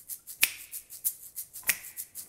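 A looped percussion rhythm of short, sharp clicks and taps, several a second, with a louder snap-like accent about every second and a quarter; no pitched notes yet.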